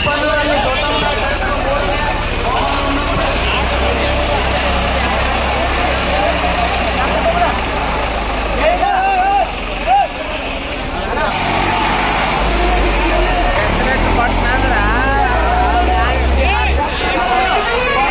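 New Holland 3630 tractor's diesel engine running with a low drone that grows louder twice, about four seconds in and again past the twelfth second, amid a crowd shouting.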